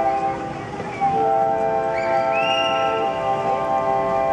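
Symphonic wind band playing full sustained chords. The sound dips briefly, a new loud chord comes in about a second in, and a high line slides upward above it about two seconds in.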